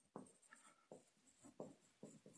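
Faint, short strokes of a marker writing on a whiteboard, about half a dozen in two seconds.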